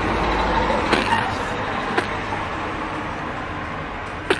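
Road traffic, a steady wash of passing cars, with two sharp clicks about one and two seconds in.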